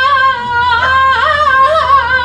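A woman singing a saeta solo and unaccompanied: one high voice holding long notes with wavering, ornamented flamenco turns, with a brief breath about half a second in.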